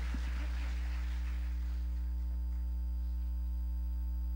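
Steady low electrical mains hum from the church's sound system, with a faint haze from the room dying away over the first two seconds after the music stops.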